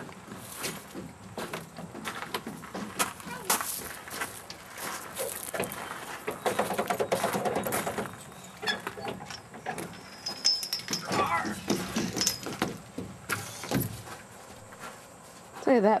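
Children playing on a playground climbing frame: irregular footsteps and knocks on the metal deck, with wordless children's voices now and then.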